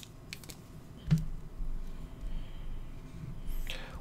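Marker tip on a whiteboard: a few light taps and short strokes as a small cross of axes is drawn.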